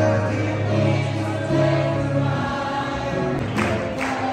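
Live street performance: a male singer singing through a small PA to his own acoustic guitar, in long held notes. Sharper strummed or clapped accents come in near the end.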